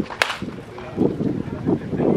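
A baseball bat hitting a pitched ball: one sharp crack just after the start.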